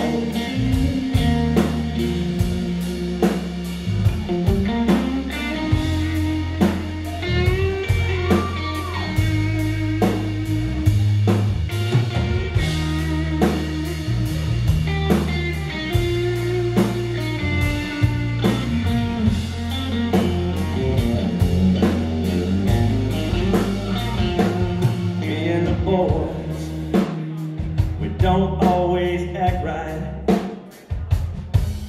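Live country-rock band playing an instrumental break: an electric guitar lead with bent notes over bass guitar and a steady drum-kit beat.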